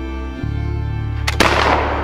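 A black-powder flintlock rifle firing once, about one and a half seconds in. A short click comes a split second before the loud report, and the report dies away over about half a second.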